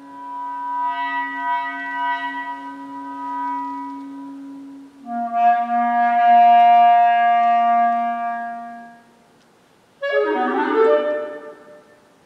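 Clarinet playing two long held notes that swell and fade, a short pause, then a brief loud flurry of quick notes near the end.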